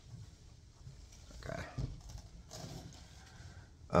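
A person sitting down on a couch: clothing rustle and shuffling, with one short thump a little under two seconds in, just after a quick spoken "okay".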